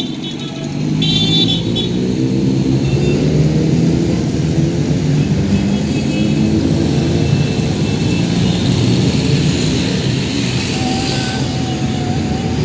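A procession of motorcycles riding past at low speed, their engines running steadily as one bike after another goes by. A horn toots briefly about a second in.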